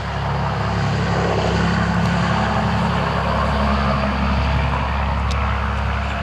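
A motor vehicle engine running close by: a steady low hum that grows louder over the first second, holds, then eases slightly near the end.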